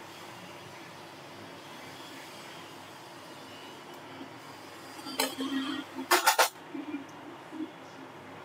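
Steady low room hum, broken by a brief rustle about five seconds in and a quick run of three or four short scrapes or clicks about six seconds in.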